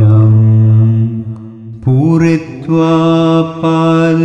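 A single voice chanting Pali pirith in long drawn-out notes. A held note fades out about a second in, and after a short lull a new note glides up just before two seconds and is held.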